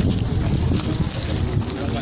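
Wind buffeting the microphone of a handheld camera, a loud, uneven low rumble, with indistinct voices of people in the background.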